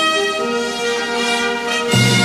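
Military band music, brass holding slow sustained notes that change pitch every half second or so. Just before the end it cuts abruptly to a louder, steady low chord.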